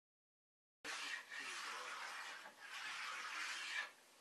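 Ski-waxing cork rubbed back and forth over warm hot-rubbed wax on a ski base: a steady scrubbing hiss that starts about a second in, in strokes a little over a second long, and drops off just before the end.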